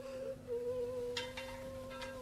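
Quiet background score: one long held note that wavers slightly in pitch, with two short, sharp higher notes about a second in.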